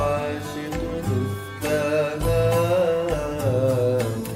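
Arabic Sufi devotional song: a male voice holding a long, wavering, ornamented melodic line over deep drum beats.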